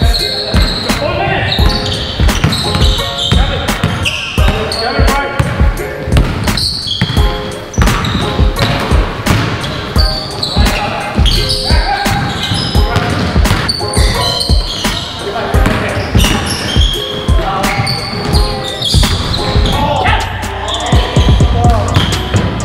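Basketball bouncing on a hardwood gym floor during play, a rapid irregular series of knocks, along with players' footsteps.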